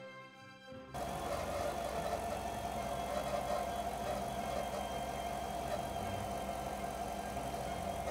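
Background music for about the first second, then a cut to a Chevy Tahoe/Suburban's V8 engine idling steadily under the open hood, after its thermostat housing has been replaced.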